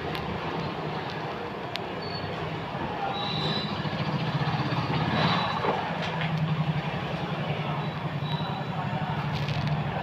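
Steady street-traffic noise with an engine running as a low hum that grows louder about three seconds in, with a few short high squeaks.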